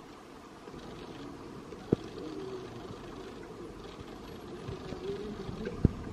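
A key being worked in the lock of a heavy wooden door and the door being opened: two sharp clunks, one about two seconds in and a louder one near the end, over a steady low background noise.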